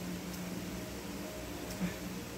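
Steady low hum of background room noise with a few faint small clicks.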